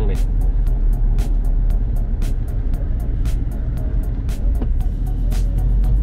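Mercedes-Benz CLK 230 Kompressor convertible driving at road speed with the top down: a steady low road and wind rumble in the open cabin. Background music with a ticking beat plays over it.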